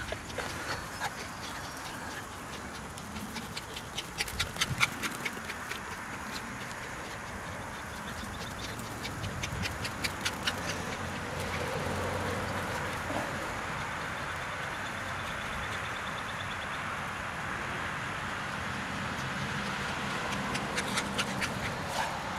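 A small terrier-type dog playing in a grassy yard, with a steady outdoor hiss and two runs of rapid clicking, about four seconds in and again about ten seconds in.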